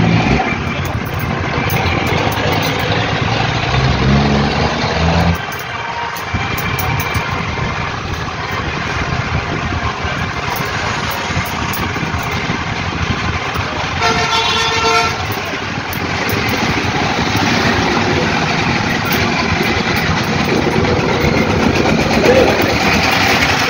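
Street traffic noise with vehicle engines running, a low engine sound cutting off about five seconds in, and a vehicle horn sounding for about a second around the middle.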